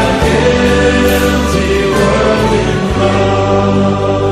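Christian worship music: a choir holding sustained notes over instrumental accompaniment, the bass note shifting about three seconds in.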